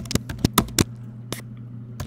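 Computer keyboard keys clicking as someone types, about six keystrokes at an uneven pace, over a steady low hum.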